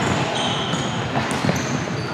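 Futsal play on a hardwood gym floor: several brief high squeaks of shoes on the court and the knock of the ball, in a large echoing gym.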